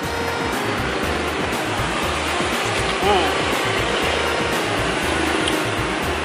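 A steady mechanical hum and hiss with a low rumble that swells and fades, under a man's short 'hmm' of approval while eating about three seconds in.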